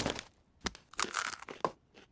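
Cartoon sound effect of hands rubbed together at super speed to dry them: a short rushing friction burst. It is followed by a few sharp clicks and papery rustling.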